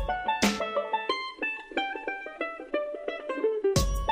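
Upbeat background music led by a plucked-string melody. The beat drops out after about a second, leaving the plucked notes alone, and comes back in near the end.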